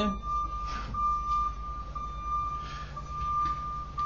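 A steady high, whistle-like tone with brief dropouts over a low hum, both running through the pause in speech.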